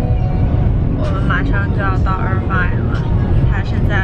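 Steady low rumble of a moving car heard inside its cabin, with a voice talking over it from about a second in.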